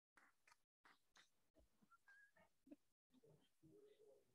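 Near silence: faint room noise in a meeting room, broken up by short gaps where the audio drops out completely.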